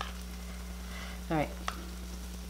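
A metal spoon stirring and scooping thick sauce in a plastic tub, with a sharp click from the spoon partway through. Under it runs a steady low hum and hiss.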